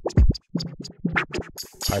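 Drum loop playing through the Flux Mini modulation filter in low-pass mode. The filter is tempo-synced to eighth notes, and its resonance is being turned up and down as it plays.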